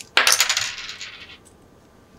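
Small rear sight of a 1/6 scale HK G28 model rifle being slid back along its rail: a quick run of tiny rattling clicks that starts sharply and fades out over about a second.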